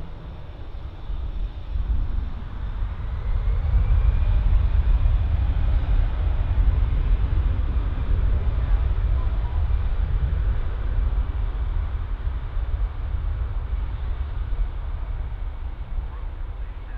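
Airbus A320-family airliner's jet engines running at taxi power as it turns onto the runway: a steady low rumble with a faint whine. It grows louder a few seconds in, then eases slowly.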